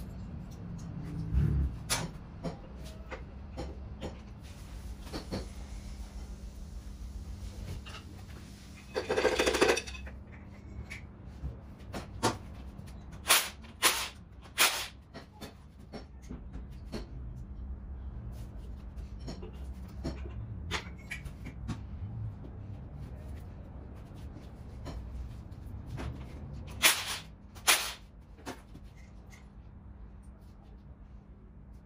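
Metal tools and engine parts clinking and knocking during an engine teardown, with a cordless power tool, likely a ratchet, running in one short burst about nine seconds in. A steady low hum runs underneath.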